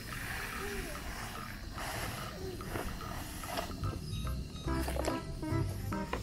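Sand sliding and pouring off a tipped plastic toy dump-truck bed for the first couple of seconds, over background music.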